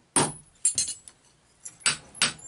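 Blacksmith's hammer striking hot steel of an axe head on an anvil: about four sharp metallic blows, two of them close together near the middle.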